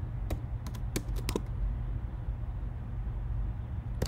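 A few computer keyboard keystrokes in the first second and a half, then only a steady low hum.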